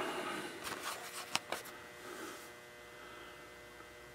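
Quiet steady electrical hum in a small room, with a few faint clicks in the first second and a half.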